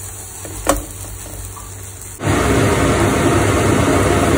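Besan chilla batter being spread with a metal ladle on a hot oiled nonstick skillet: quiet at first, with one light scrape of the ladle about a second in. About halfway through, a steady loud hiss with a low rumble starts abruptly and holds to the end.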